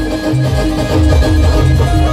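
Loud live band music played through a large truck-mounted speaker stack: heavy, pulsing bass under a melody of held notes.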